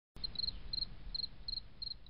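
A cricket chirping about three times a second, each chirp three or four quick high pulses, over a low steady rumble.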